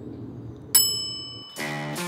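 A single sharp metallic ding that rings with high tones and fades over most of a second, followed about one and a half seconds in by the start of guitar music.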